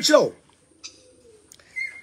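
A man's speech trails off, then a faint bird call sounds in the background during the pause.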